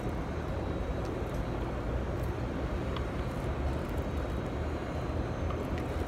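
Steady low rumble and hiss inside a passenger rail car as the train runs.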